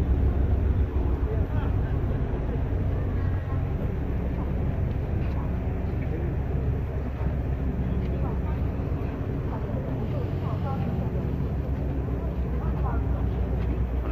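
Ferry engine running with a steady low drone, under the chatter of a crowd of passengers close by.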